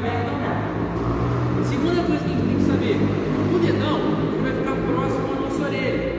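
A man talking continuously in Portuguese, with music underneath.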